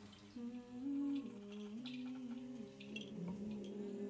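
Soft wordless humming of a slow, low melody: held notes stepping up and down in pitch. A few light percussion ticks sound over it.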